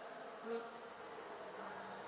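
Steady background noise with a faint buzz, and a brief quiet 'oui' about half a second in.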